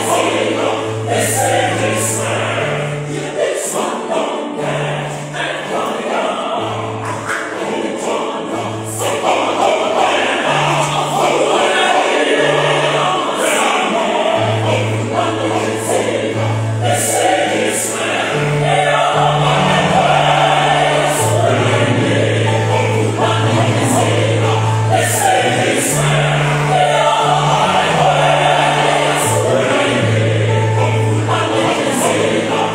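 A large mixed choir of men and women singing in harmony in a gospel style, over a low bass line of held notes that step from pitch to pitch, played on a keyboard. The singing swells louder about a third of the way in.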